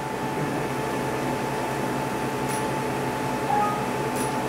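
IPL treatment machine humming steadily, its cooling fan running, with a faint short click about halfway through as the handpiece fires a pulse of light.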